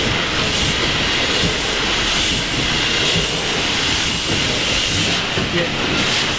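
James Kay steam engine running during a troublesome start, enveloped in escaping steam: a loud steady hiss of steam with a rhythmic pulse of puffs, about two a second.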